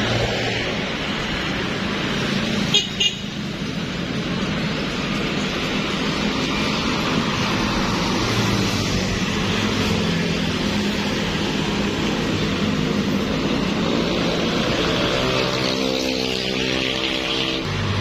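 Steady road traffic: cars, motorcycles and jeepneys passing on a busy multi-lane street. A brief horn toot sounds about three seconds in, and a passing vehicle's engine note swells near the end.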